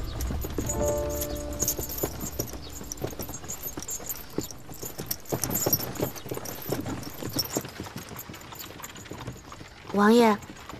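Horses walking on a gravel road, their hooves clopping in an irregular rhythm, with a horse-drawn carriage. The last notes of a music cue fade out in the first two seconds.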